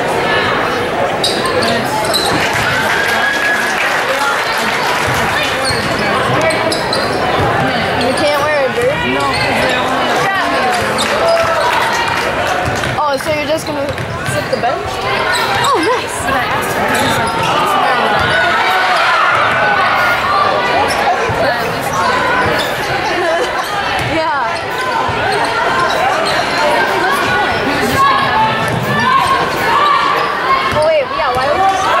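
Basketball bouncing on a hardwood gym floor during play, under the steady chatter of many spectators' voices in a large gym.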